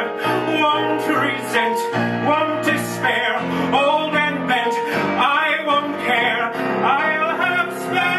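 A man singing a musical-theatre song live with instrumental accompaniment, his voice moving through long held and gliding notes.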